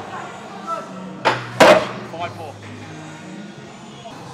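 Two short, sharp sounds about a third of a second apart, roughly a second and a half in, over faint steady background music in a gym.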